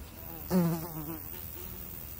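A brief buzz, like a flying insect, starting about half a second in and wavering in pitch for under a second before fading.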